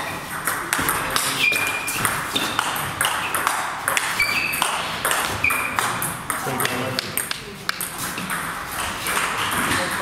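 Table tennis balls clicking off bats and tables in a fast, irregular run of sharp ticks through a rally, with more ball clicks from neighbouring tables mixed in.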